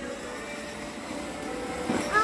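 Battery-powered ride-on toy car driving on concrete: its small electric motors running and hard plastic wheels rolling, a steady noise.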